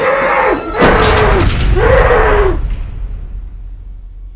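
Muffled screams from a man gagged with duct tape: several short rising-and-falling cries. A loud, deep boom and crash begins about a second in, then fades away near the end.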